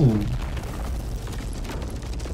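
Low, steady rumble of a large explosion set off beside a car, rolling on after the blast as the fireball turns to smoke, with a man's short 'ooh' at the start.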